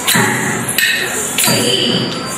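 Bharatanatyam rhythm accompaniment: strokes on a mridangam drum and clashes of small nattuvangam hand cymbals keep time for a dance step, with the dancers' feet stamping the stage. The strikes come evenly, about every two-thirds of a second, over a thin, steady cymbal ring.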